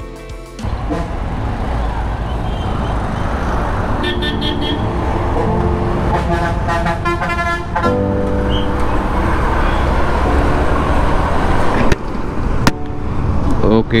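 Motorcycle riding through city traffic, its engine and the road noise steady throughout. Vehicle horns honk about four seconds in and again from about six to eight seconds in.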